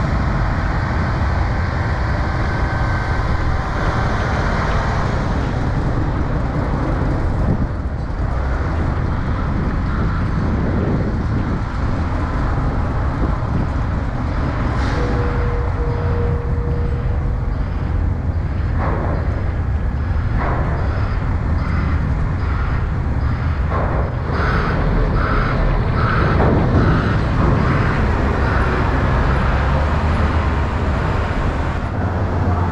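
Steady low rumble of a car's engine and tyres as it drives slowly up the loading ramp onto a ferry. A short single tone sounds about halfway through, and a run of evenly spaced beeps comes near the end.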